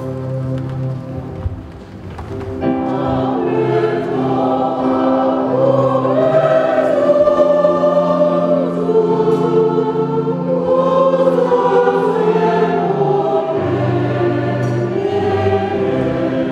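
Many voices singing a slow hymn together over steady held chords; the singing fills out about three seconds in.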